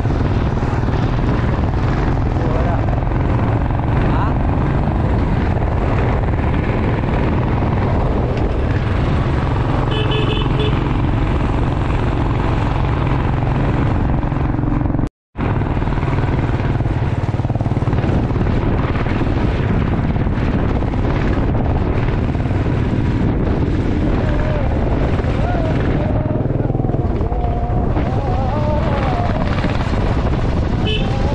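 Royal Enfield motorcycle running at road speed, heard from the bike with steady wind rush on the microphone. The sound breaks off for a moment about halfway through.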